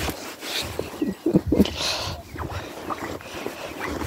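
Sheep nuzzling right up against the phone: wool and muzzles rubbing on the microphone as rough handling noise, with a brief sniff-like hiss and a few short, low vocal sounds about a second and a half in.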